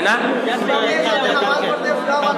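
Speech only: men talking, with more than one voice at once.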